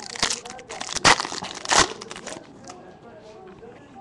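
Foil wrapper of a 2013 Bowman Chrome baseball card pack being torn open and crinkled by hand, with the loudest crinkles about a second in and again just before two seconds. The crinkling stops about halfway through.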